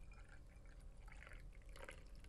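Coffee poured from a glass carafe into a stemmed glass mug: a faint, steady trickle of liquid.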